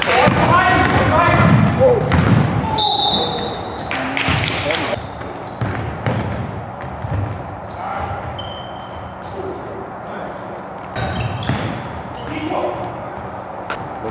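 Basketball game on a hardwood gym floor: a ball bouncing as it is dribbled and sneakers squeaking in short high chirps, echoing in a large hall, with voices and laughter in the first few seconds.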